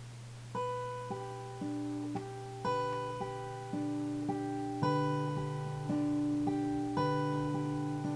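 Acoustic guitar fingerpicked in slow arpeggios, single plucked notes ringing over one another with the chord changing every second or two, beginning about half a second in. A steady low hum runs underneath.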